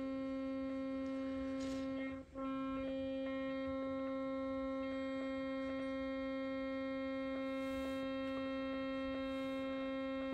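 Shortwave transceiver in AM mode receiving a financial trading data signal: a steady hum of several fixed tones, with one brief dip a little over two seconds in.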